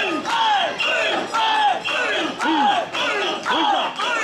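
Mikoshi bearers shouting a rhythmic carrying chant in unison, about two shouts a second, each call falling in pitch.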